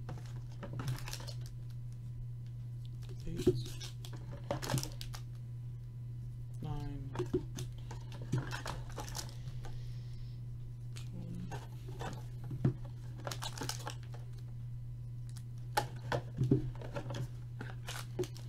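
Foil trading-card pack wrappers crinkling in irregular bursts as the packs are handled, drawn out of a cardboard box and written on with a marker. A steady low hum sits underneath.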